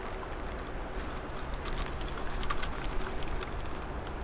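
Steady rush of a flowing creek with a low rumble of wind on the microphone. A few light clicks about halfway through as the spinning rod and reel are handled.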